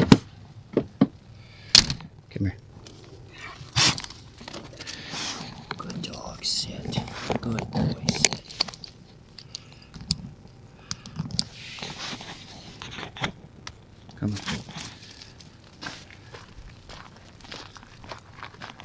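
Scattered sharp clicks and thunks of handling gear at an open van compartment, with scraping, then footsteps crunching on gravel.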